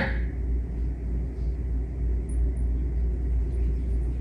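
Steady low background rumble with no other distinct event: a pause between spoken phrases.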